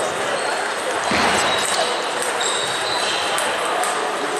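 Busy sports-hall ambience: table tennis balls clicking off bats and tables at the surrounding matches, over a background hubbub of voices, with a louder swell of noise about a second in.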